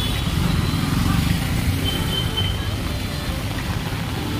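Auto-rickshaw engine rumbling past close by, strongest in the first two seconds or so, over a steady hiss of heavy rain and traffic on the wet road.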